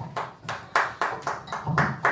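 A few people clapping: sparse, fairly even hand claps, about four a second.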